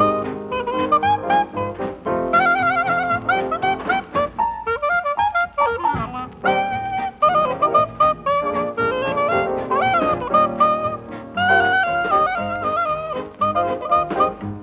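Traditional New Orleans-style jazz band on a historic 1940s recording, with trumpet, clarinet and trombone playing interwoven melody lines.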